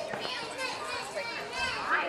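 Children's voices chattering, high-pitched and overlapping, with no clear words.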